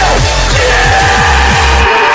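Hardstyle electronic music: fast, repeated distorted kick drums that drop in pitch, under a sustained synth lead. The kicks cut out briefly near the end.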